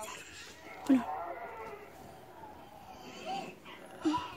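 A young girl's voice making drawn-out, wordless sounds, with a short loud squeal rising in pitch about a second in.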